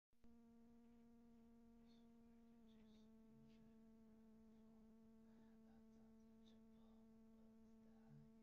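A faint, steady buzzing drone holding one low pitch with a stack of overtones, starting right at the beginning and running unbroken.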